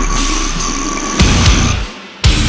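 Slamming brutal death metal by a full band, with down-tuned guitars and drums. Heavy low hits come in about a second in, and near the end the band stops abruptly in a short break.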